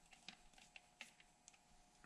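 Faint, scattered clicks of a flat-head screwdriver turning a screw into a plastic snowmobile handguard, over a faint steady hum.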